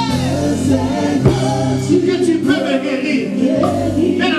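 Live gospel worship music: a male lead singer sings over a keyboard-led band, with backing singers joining in.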